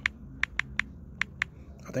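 Typing on a smartphone's on-screen keyboard: a quick, uneven run of short key clicks, about seven in two seconds.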